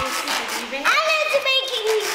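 Only speech: a young child talking.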